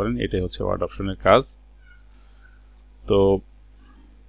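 A man's voice speaking for about the first second and a half, then a pause with only faint room tone, broken by one short voiced sound about three seconds in.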